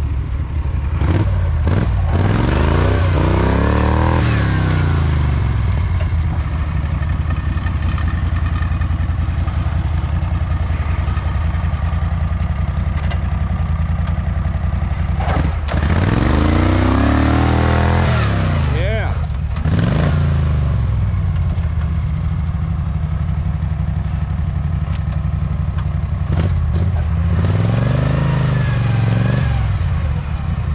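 Small garden-tractor engine running hard and being revved up and back down several times: around two seconds in, again from about fifteen to twenty seconds, and near the end.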